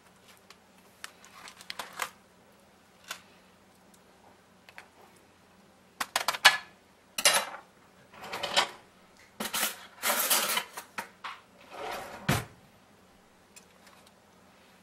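Metal cutlery clicking and scraping on aluminum foil and a pan while tender cooked ribs are pulled apart: a few light clicks at first, then from about six seconds in a run of louder scrapes and foil crinkles.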